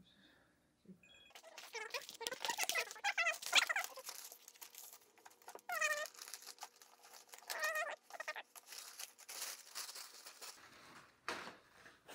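Newspaper and painter's tape being handled while masking a plastic toy car body: paper crinkling and rustling, with several short, high squeaks that bend in pitch, the loudest about three and a half seconds in.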